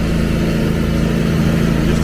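Engine of a Toro ProCore aerator running steadily as it solid-tines the green, a constant low hum.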